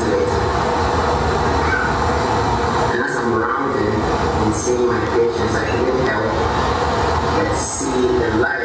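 Indistinct voices over a loud, steady rumbling din, with no clear words.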